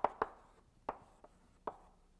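Chalk knocking against a blackboard as it is written with: about five sharp taps, irregularly spaced.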